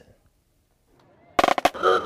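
A moment of near silence, then about one and a half seconds in a quick run of loud, sharp cracks from the parade street sound, with a voice starting just after.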